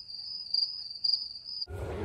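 Cricket-chirping sound effect, one steady high trill, with all other sound cut out; it stops shortly before the end. It is the stock gag for an awkward silence.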